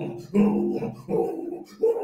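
A man's voice making short rhythmic grunting 'oh' sounds, about one every 0.7 seconds, imitating sexual moaning.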